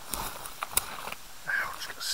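Boots stepping through low brush and dry sticks on a forest floor: rustling and crackling footfalls, with one sharp crack about three quarters of a second in.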